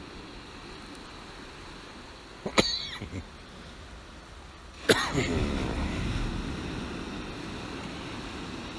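A person coughing twice: a short cough about two and a half seconds in, then a louder one near five seconds that trails off in a falling voiced sound.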